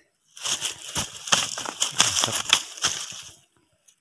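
Dry leaf litter and twigs crackling and rustling, with a dense run of sharp crunches for about three seconds that stops abruptly.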